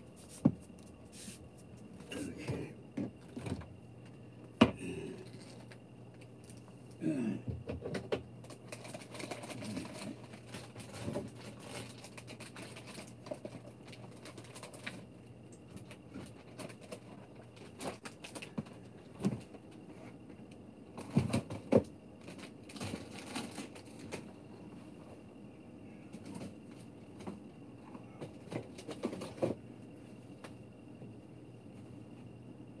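Scattered knocks, clicks and rustling of bags from someone moving about unseen while putting away groceries, with two sharp clicks near the start standing out, over a faint steady hum.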